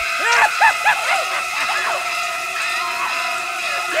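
A woman's repeated short, high screams over the shrieking high violins of the shower-scene score, with held string tones underneath.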